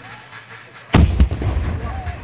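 Black-powder gunfire: a loud report about a second in, a second smaller report just after it, then a long low rumbling echo.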